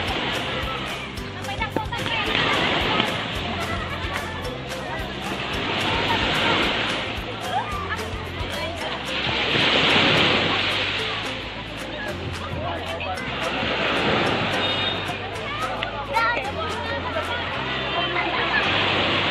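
Small waves breaking and washing up a sandy beach, surging in and out about every four seconds, loudest around the middle. Voices of people in the water mix in, over background music with a stepping bass line.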